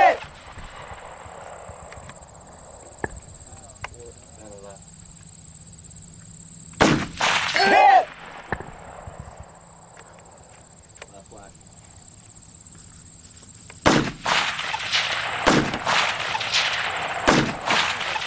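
Rifle shots at long-range steel targets: a pair of shots about seven seconds in, then a string of four or five from about fourteen seconds, with a ringing ping of the steel being struck arriving about a second after some of them.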